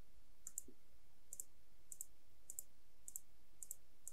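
Computer mouse button clicked over and over, about once every 0.6 seconds, each a quick double click of press and release, flipping an on-screen input switch off and on.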